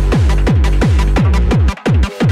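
Hardtek (free tekno) DJ mix: a fast, steady kick drum with each hit dropping in pitch, which cuts out briefly near the end.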